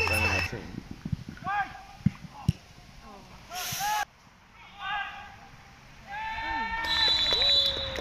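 Shouts across an outdoor football pitch: several short, high-pitched calls, then a longer held shout near the end that drops in pitch, with a few faint knocks of the ball.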